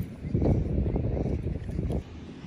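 Wind buffeting the microphone: a rough, uneven low rumble.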